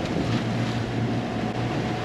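Steady rush of wind and sea water around a sailboat under way, with a low steady hum underneath.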